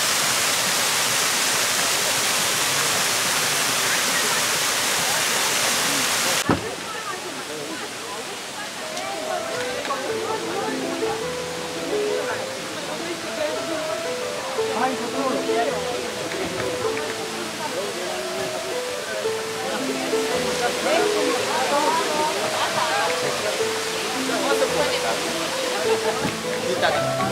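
Bigăr waterfall: a steady, loud rush of water pouring over a moss-covered rock, cut off abruptly about six seconds in. After the cut, people talk over background music.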